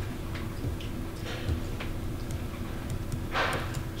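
Meeting-room tone: a steady low hum with a few faint scattered clicks, and a brief hiss near the end.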